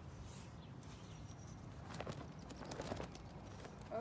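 Faint movement sounds of a color guard flag routine being performed: a few soft knocks and swishes around two to three seconds in, over quiet room noise.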